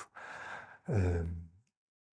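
A man's audible intake of breath close to the microphone, followed by a short drawn-out hesitation sound ('eee') that falls in pitch and fades out, then dead silence.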